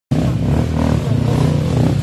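Off-road dirt bike engine running at low revs, with small surges in its note as it works up a steep rocky trail.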